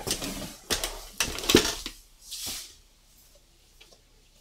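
A few light knocks and clatters of hard objects being moved about on a work table, the loudest about a second and a half in, then a brief soft rustle.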